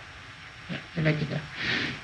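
Speech: a voice talking briefly through the middle, after a moment of quiet room tone.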